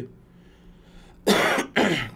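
A man clearing his throat: two short, loud bursts about a second and a quarter in, half a second apart.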